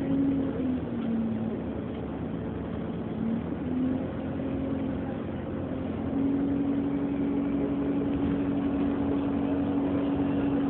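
Cabin sound of an Alexander Dennis Enviro400 hybrid double-decker bus on the move: a steady drivetrain and road rumble with a humming tone that shifts pitch in the first few seconds, then holds steady from about six seconds in.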